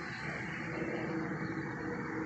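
Steady outdoor background noise, an even hum with no distinct events.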